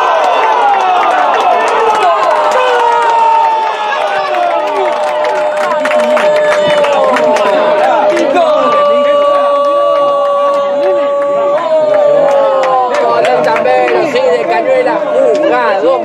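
A football TV commentator's long drawn-out goal call, one shout held on a single note for about ten seconds, over a crowd cheering.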